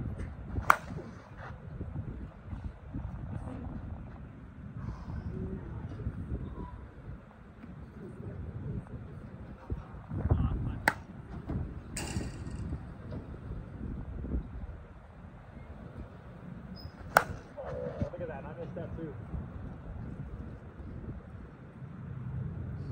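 ASA Monsta TruDOMN8 slowpitch softball bat striking pitched softballs: a sharp crack about a second in, two more around 11 and 12 seconds, and another near 17 seconds. Low wind rumble on the microphone runs underneath.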